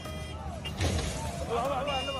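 Vehicle engine noise with raised, shouting voices that come in about a second in, over a steady low music drone.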